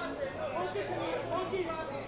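Indistinct chatter of several voices talking and calling out over one another, with a low steady hum underneath.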